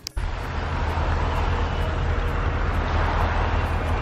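Steady outdoor traffic noise: a constant low rumble with a hiss over it, cutting in abruptly just after a brief click.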